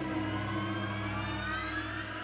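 A low, steady horror-score drone with a rising, siren-like tone sweeping upward from about half a second in: a transition riser sound effect.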